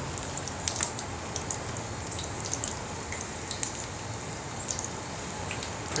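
Batter-coated onion rings frying in a skillet of hot oil: a steady sizzle with scattered small pops and crackles.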